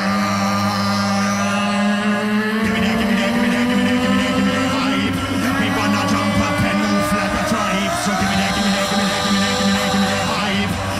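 Live loopstation beatbox performance: layered looped vocal chords held under a low sustained tone that slides slowly upward, with a looped beat and bass coming in about two and a half seconds in.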